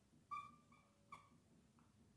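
Faint squeaks of a dry-erase marker writing on a whiteboard: a few short squeals, the clearest about a third of a second in and just after a second in.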